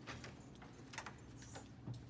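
Lever handle and latch of a wooden double door being worked as the door is pushed open: a few short clicks and rattles.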